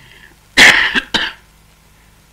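A woman coughing twice into a handkerchief held to her mouth: a loud first cough about half a second in, then a shorter second one.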